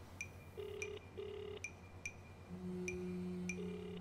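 Telephone ringing tone heard through a handset while a call connects: two short tones in quick succession, the pair repeating about every three seconds. Soft background music with a low sustained note and faint ticks sits under it.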